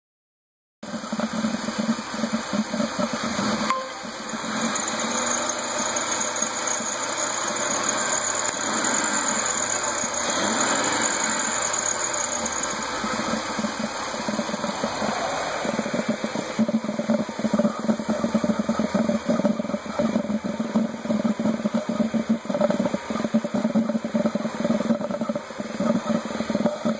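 A car engine running with an odd, uneven gurgling, sloshing noise that sounds like there is water in it, like a broken toilet. It is heard at the open air filter box and starts about a second in.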